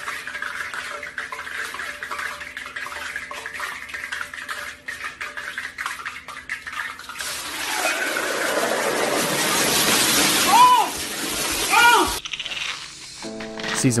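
Hot oil hissing and spattering in a stovetop pot. The rush of hiss swells loud over several seconds, with two short yelled cries near the end, and cuts off suddenly.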